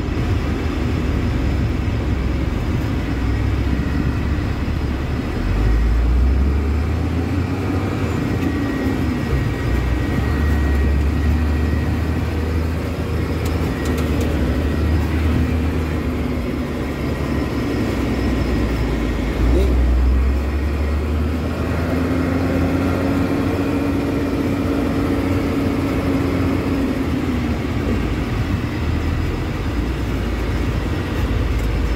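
Truck engine and road noise heard inside the cab while driving in stop-and-go city traffic, a steady low rumble with the engine pitch rising and falling a few times as it pulls away.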